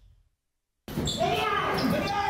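Silence for almost a second, then the raid footage's own sound cuts in abruptly: men's voices calling out and thudding footsteps as a group rushes up a concrete stairwell, echoing.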